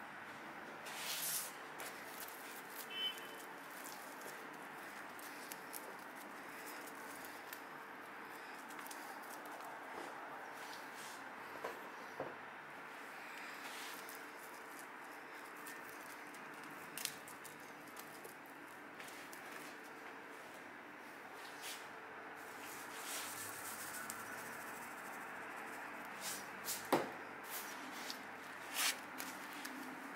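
Hands spreading and pressing sushi rice onto a sheet of nori: faint soft pats and scattered light taps over a steady low room hum, with a few sharper clicks near the end.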